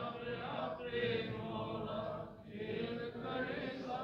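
A congregation singing a devotional refrain back in unison, softer and more distant than the lead voice, as a slow sustained chant.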